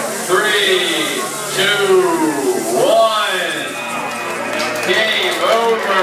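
Voices talking and calling out over one another in a large hall, the words not clear.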